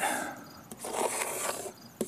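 Wet acrylic paint being scraped off a palette board, a rubbing scrape lasting about a second near the middle.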